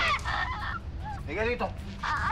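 A woman's wordless cries of distress while she is grabbed by the hair: a few short, strained wails, each falling in pitch.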